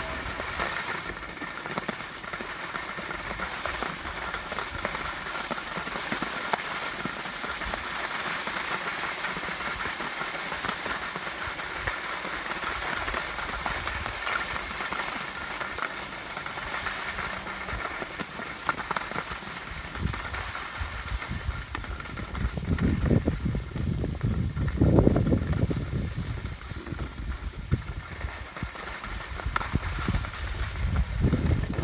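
Skis sliding and scraping over groomed snow, a steady hiss. Wind buffets the microphone in low rumbling gusts during the last third.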